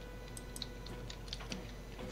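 Faint, irregular clicks of a computer mouse and keyboard, about eight in two seconds, over a steady low hum.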